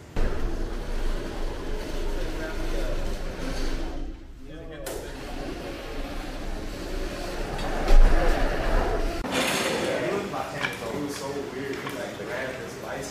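Indistinct voices and work noise over a steady low rumble, with a sudden loud knock about eight seconds in; the rumble stops about a second later.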